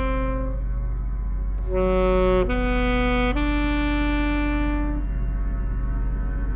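Alto saxophone finishes a held note, then after a short pause plays three slow rising notes, the last one sustained, over a steady low drone.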